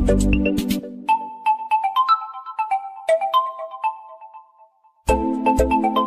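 Background music: the bass and beat drop out about a second in, leaving a lone high melody of short ringing notes that fades away to a moment of silence, then the full track with its beat starts again near the end.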